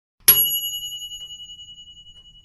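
A notification-bell sound effect for the subscribe button: one bright metallic ding that rings on with a high, pulsing tone, fading away over about two seconds.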